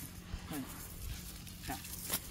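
Two short, low vocal sounds from a person, about half a second in and again near the end, with no words in them.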